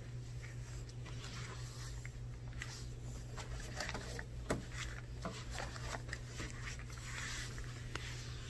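A damp microfiber cloth rubbing and wiping over the plastic console, handles and body of an elliptical machine, with scattered light taps, and one sharper knock about halfway through. A steady low hum runs underneath.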